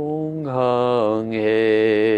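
A man chanting a mantra in long, held notes on a low, steady pitch. A new syllable begins about half a second in.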